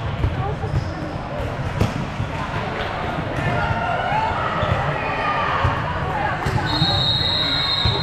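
Busy volleyball gym: repeated dull thumps of volleyballs being hit and bouncing on the courts, under voices of players and spectators. Near the end a referee's whistle sounds, one steady high blast held for over a second.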